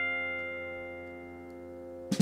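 A guitar chord ringing out and slowly fading away, with no new notes played.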